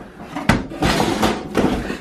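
A sharp knock about half a second in, as a plastic hard case is handled, then scraping and rustling of cardboard as a smaller box is lifted out of a cardboard shipping box.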